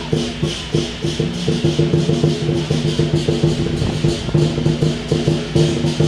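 Lion dance percussion band of drum, cymbals and gong playing a fast, steady beat, with about four cymbal crashes a second over a ringing pitched tone.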